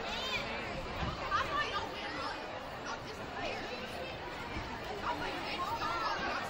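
Crowd chatter: many people talking at once, with high-pitched children's voices standing out now and then.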